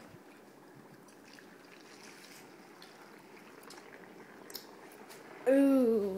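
Dry ice bubbling in a bowl of warm soapy water beneath a swelling soap-film dome, a faint, steady bubbling. Near the end a child's voice exclaims.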